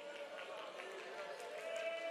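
A quiet pause between spoken phrases: faint, steady sustained tones, with a slight rise about a second and a half in, over a low room murmur.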